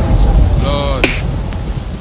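A rolling thunder-and-rain sound effect in a hip hop track: a heavy low rumble with a rain-like hiss that fades over the two seconds. A short vocal sound cuts in about two-thirds of a second in.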